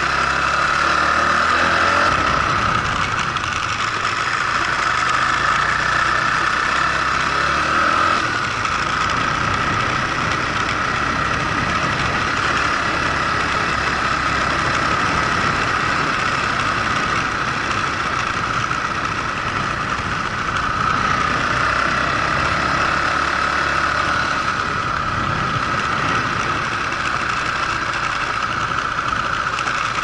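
Honda CBX125 motorcycle engine running steadily while the bike is ridden along a path, with a slight change in its sound about 2 and 8 seconds in.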